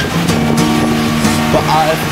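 Background music: a gentle acoustic-guitar pop song with sustained chords. A sung line starts near the end.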